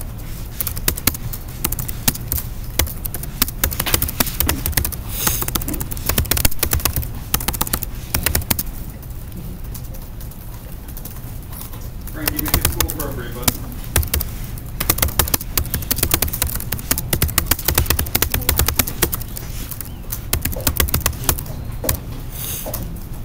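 Typing on a Chromebook laptop keyboard: quick, uneven runs of key clicks with short pauses between words. A voice is heard briefly about twelve seconds in.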